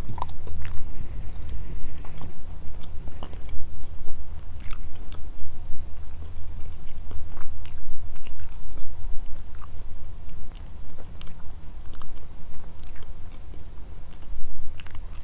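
A person chewing and biting food close to the microphone: steady muffled chewing with scattered short, sharp mouth clicks and smacks, the sound of eating a grilled chicken meal.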